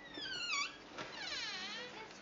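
Door hinges squeaking as a wooden door swings open: two drawn-out creaks, the first falling in pitch, the second dipping and then rising again, with a light knock about a second in.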